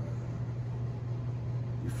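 Steady low hum with a faint hiss under it: room background noise in a pause between words.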